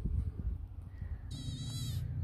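Wind buffeting the microphone, then in the last second a goat bleats briefly, high and wavering.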